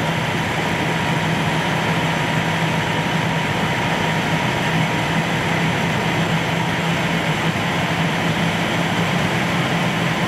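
Fire engine's diesel engine and fire pump running steadily while pumping water to the hoses, a constant drone with a steady low hum and no change in speed.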